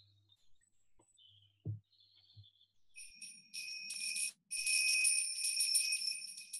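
A high, rapid jingling or tinkling sound with a steady ringing tone in it starts about three seconds in and grows louder, breaking off briefly just before the fifth second. A soft thump comes just before the two-second mark.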